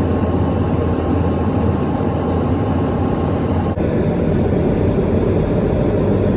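Airliner cabin noise heard from a window seat: a loud, steady rush of engines and airflow with a deep low drone, briefly dipping about four seconds in before carrying on.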